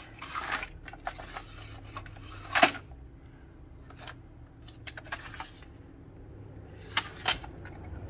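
Plastic drawers of a small-parts organizer being slid and knocked, with small metal parts rattling inside them: a string of light clicks and clatters, loudest about two and a half seconds in and twice in quick succession near the end.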